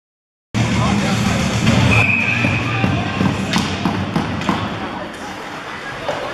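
Ice hockey game sound in a rink: voices and crowd noise over a low hum, with several sharp clacks of sticks and puck. It cuts in abruptly about half a second in.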